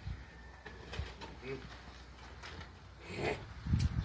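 A steel shovel scraping and scooping into a pile of dry cement and gravel while the mix is turned by hand. There are a few brief scrapes, the loudest near the end, with faint voices underneath.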